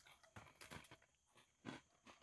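Near silence, with a few faint soft ticks of a person chewing a Coke-soaked Oreo cookie.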